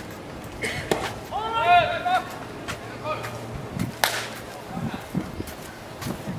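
A baseball smacks into a catcher's mitt about a second in, followed by a long shouted call from a player. A louder sharp crack of a ball striking leather comes about four seconds in.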